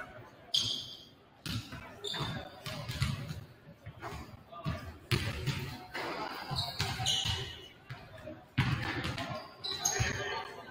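Basketballs bouncing on a hardwood gym floor, irregular thuds about once a second that echo in the large hall, with short high squeaks over a background of distant chatter.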